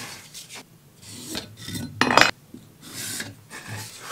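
Pen scratching marking lines across a wooden block along a wooden yardstick, a series of short rubbing strokes on the wood. The loudest is one sharp, rasping stroke about two seconds in.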